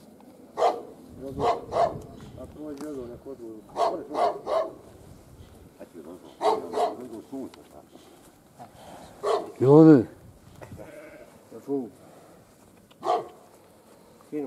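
A dog barking repeatedly in short bursts of two or three barks, with a louder, longer drawn-out call about ten seconds in.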